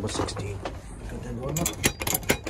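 A paper parcel envelope rustling and crackling as it is handled and set down at a doorstep, with a few sharp crackles near the end, over a steady low hum.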